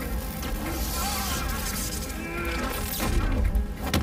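Film fight soundtrack: electricity buzzing and crackling from an electric-power effect over score music, with a man groaning and a heavy hit about three seconds in.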